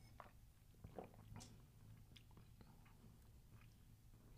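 Near silence with a few faint sips and swallows from a glass, most of them around a second in.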